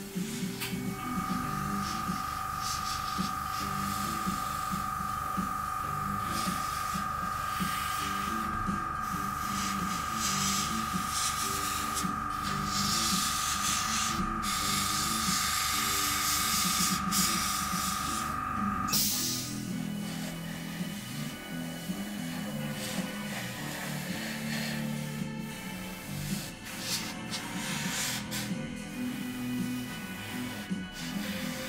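Gravity-feed airbrush spraying: a steady hiss of air with a thin whistling tone, briefly interrupted a few times and stopping at about nineteen seconds in, as small mottle spots of paint are laid on. Background music plays underneath.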